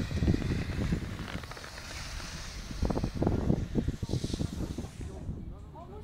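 Wind rushing over the microphone of a camera skiing down a piste, with the hiss of skis on packed snow. The rushing is loudest in gusts about three seconds in and drops away about five seconds in.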